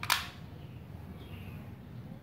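A single sharp click right at the start, short and bright with a brief ring-out, over a low steady background hum.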